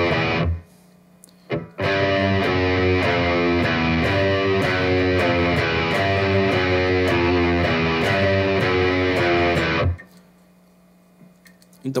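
Electric guitar through a distorted amp playing a low, chugging riff in 10/8 time: a descending line on the low E string going down fret by fret to the open string. The riff stops about half a second in, starts again after a short pause, and stops about ten seconds in. A faint amplifier hum is left in the pauses.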